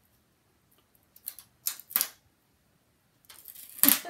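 Paper and cardstock being handled on a cutting mat as a strip is nudged into position: a few short clicks and rustles, then a longer scraping rustle with a sharp click near the end.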